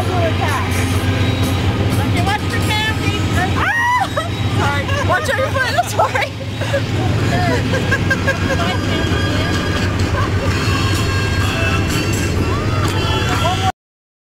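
People's voices calling over steady background music, cut off abruptly just before the end.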